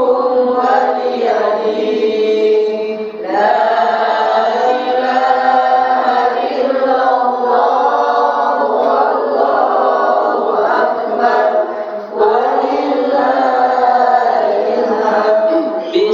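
A man reciting the Qur'an aloud in Arabic into a handheld microphone, chanting in long melodic held phrases. There are brief pauses for breath about three seconds in and again about twelve seconds in.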